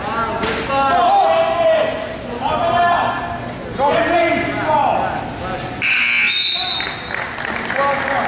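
Coaches and spectators shouting in a gym, then about six seconds in an electronic scoreboard buzzer sounds for about a second, its tone stepping higher halfway through. The buzzer marks the end of a wrestling period.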